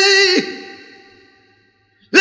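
Unaccompanied male flamenco voice singing a saeta, ending a long held note with a sharp downward slide about half a second in. The sound then fades away gradually to near silence.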